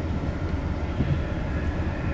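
Cabin noise of a KiHa 183 series diesel express train under way: a steady low rumble of the running train, heard from inside the passenger car.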